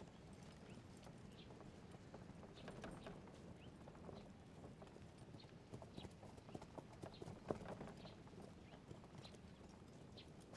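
Faint, irregular clip-clop of horses' hooves as several horses walk along a dirt road.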